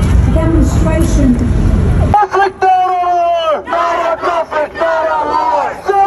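A man chanting slogans through a handheld megaphone amid a crowd of marchers, in loud, drawn-out shouted phrases; the chanting starts abruptly about two seconds in. Before that, voices over a heavy low rumble.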